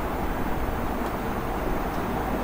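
Steady low background rumble and hiss, with a faint single tick about a second in.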